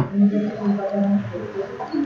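A sharp click, then a man's low wordless hum lasting about a second, pulsing a few times.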